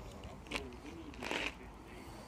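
Faint voices of people talking at a distance, over a low background rumble. A sharp click comes about half a second in, and a short hiss a little past one second.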